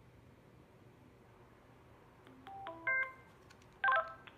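Motorola two-way radio switched on, giving its electronic power-up tones: a quick run of short beeps stepping between pitches about two seconds in, then a brief multi-tone chirp near the end.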